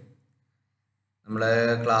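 About a second of dead silence, then a man's voice resumes speaking about a second and a quarter in.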